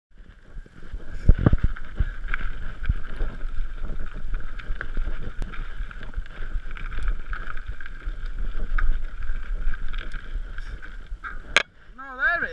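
Mountain bike riding fast down a rough, rocky gravel trail: steady tyre and drivetrain noise with a high buzz, rattles and knocks as the wheels hit rocks, the hardest thumps about a second and a half in and at three seconds, and wind on the microphone. A sharp click comes just before the end.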